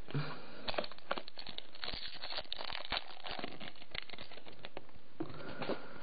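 Foil booster pack wrapper crinkling and being torn open, a busy run of small crackles that thins out near the end.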